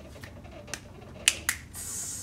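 A few sharp finger snaps, two of them close together about a second and a half in. A steady high hiss starts near the end.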